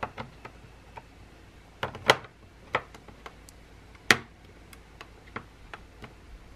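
Small gel polish pots being set down one by one into a clear acrylic drawer organizer: irregular sharp clicks and taps of the pots against the acrylic, with the loudest knocks about two and four seconds in.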